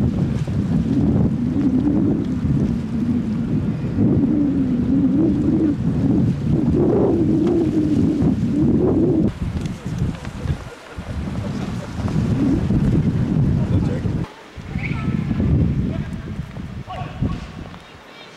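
Loud wind buffeting the camcorder microphone: a low, gusting rumble that swells and falls, dropping away briefly a few times.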